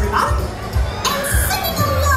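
Music with a steady beat playing over a crowd of children and adults chattering and calling out.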